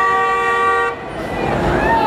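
A car horn held in one steady honk that cuts off about a second in, followed by the voices of a crowd on the street.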